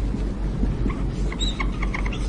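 Whiteboard marker squeaking on the board in a quick run of short strokes as a word is written, over a steady low hum.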